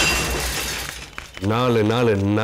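A crash on a film soundtrack, a noisy burst that dies away over about a second, followed about one and a half seconds in by a man's voice speaking.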